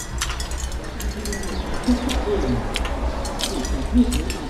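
Metal spoon and fork clinking against a plate while eating, with chewing: a scatter of short sharp clicks over a steady low rumble.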